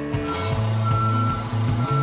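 A truck's reversing alarm beeping, a high steady beep repeating about once a second, over background music.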